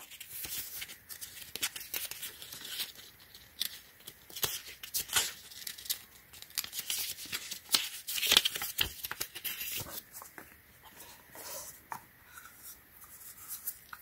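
Pages of a small folded paper user manual being flipped and handled: an irregular run of faint paper rustles and crisp little crackles, thinning out towards the end.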